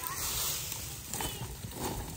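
Dry sugarcane stalks rustling and knocking together as a bundle is carried and set down on a pile, over a steady outdoor noise.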